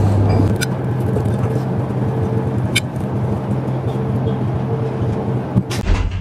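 A steady, low mechanical hum over a hissy background, with a few faint clicks.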